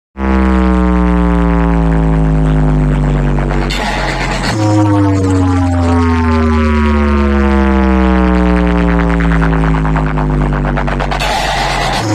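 Speaker-check 'humming' test track played loud through a DJ amplifier rack and speaker-box stack: a buzzy tone slides slowly down in pitch over a steady deep bass drone. The tone jumps back up about four and a half seconds in and again at the end, each time after a brief hiss.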